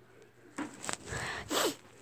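A few short rubbing and rustling noises, like fabric and a phone being handled, starting about half a second in, with a brief breathy sound near the end.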